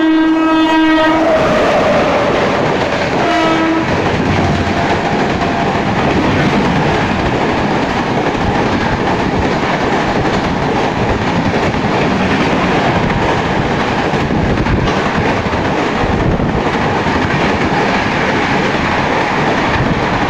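Indian Railways WAP-7 electric locomotive horn sounding twice: a long blast ending about a second in, then a short one at around three seconds. After that comes the steady rush and clickety-clack of express coaches passing at speed without stopping.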